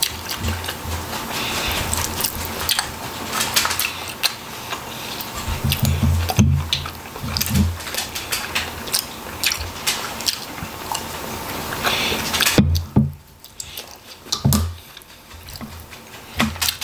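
Close-up eating sounds: wet chewing, squishing and clicking mouth and finger noises on roast chicken, with liquid poured from a plastic bottle onto the food midway.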